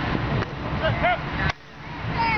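Wind rumbling on the microphone under scattered voices. About one and a half seconds in there is a single sharp crack, a board being broken, and right after it the rumble drops away suddenly.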